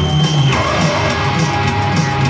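Loud live rock music from a band, with guitar, playing without a break.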